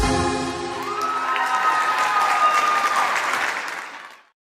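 The song's music stops, and audience applause follows, with one long held tone over it from about a second in. The applause fades out near the end.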